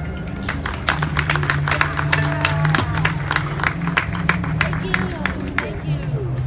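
A small audience clapping after the music stops, many quick, uneven claps that die away after about five seconds, with people talking.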